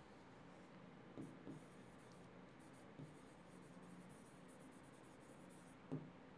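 Faint scratching and light taps of a stylus writing on a touchscreen writing board, with a few soft taps about a second in and again near three seconds, against near silence.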